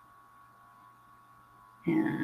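Quiet room tone with a faint, steady electrical hum; a woman's voice starts just before the end.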